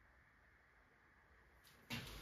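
Near silence: faint room hiss, then one sharp knock just before the end.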